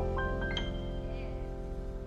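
Jazz piano trio's closing chord ringing and slowly fading, with keyboard and double bass held together, and a few short high keyboard notes added about half a second in.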